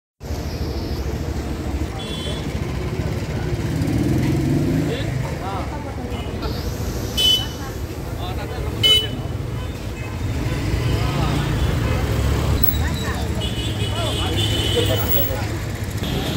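Street traffic rumbling with vehicle horns tooting: two short, loud toots about seven and nine seconds in, with shorter honks elsewhere. People talk over it.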